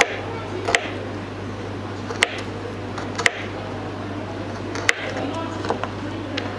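Knife cutting a frozen mackerel on a plastic cutting board: a handful of sharp, irregularly spaced clicks as the blade works through the hard fish and meets the board, over a steady low hum.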